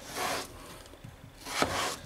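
A kitchen knife slicing through a raw peeled potato onto a wooden cutting board: two cuts about a second and a half apart.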